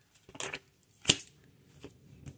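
A deck of tarot cards being shuffled and handled by hand: a few short papery slaps and flicks, the sharpest about a second in.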